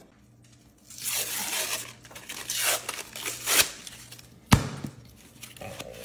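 A refrigerated biscuit dough can being opened: its paper wrapper tearing in several rough strokes, then one sharp pop about four and a half seconds in as the can's seam bursts.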